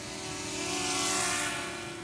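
DJI Mini 2 quadcopter's propellers whining at sport-mode speed. The whine and a rushing hiss swell to a peak about a second in, then fade as the drone passes.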